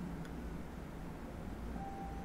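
Quiet room tone: a low, steady background hum with no clear sound event.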